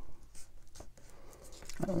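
Faint rustling and scratchy rubbing of a patterned paper piece being folded and creased by hand against a cutting mat. A woman's voice starts near the end.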